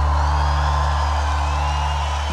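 A rock band's closing chord ringing out on a soundboard recording, a held low bass note slowly fading, with the crowd cheering faintly beneath.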